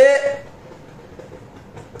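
The end of a drawn-out spoken word, then a pause filled only with steady, low background noise.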